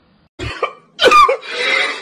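A man crying. After a short outburst, a cry falls in pitch, followed by a long raspy, breathy sob.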